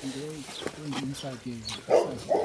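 Quiet background talking: a low male voice in short phrases, softer than close speech.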